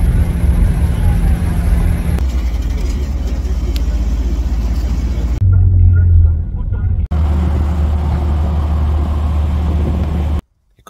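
Loud, steady low rumble of vehicle and road noise, with voices in it, in several short clips that change abruptly about two, five and a half, and seven seconds in.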